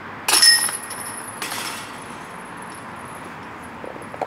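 A putted disc strikes the chains of a metal disc golf basket about a quarter second in: a sharp jingling clatter of chains with a high ringing. A second, softer clatter follows about a second later, and the chains ring on faintly as they settle. The putt is made.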